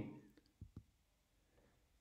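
Near silence: room tone, with two faint short clicks in quick succession a little over half a second in.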